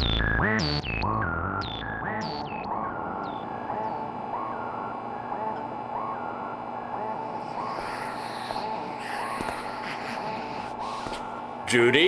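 Synthesizer playing short swooping notes, loud for the first two seconds, then fainter repeating blips about once a second over a steady hum. A louder sound cuts in just before the end.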